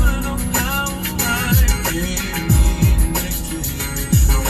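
A rhythm and blues song with singing, over deep bass-drum hits that drop in pitch.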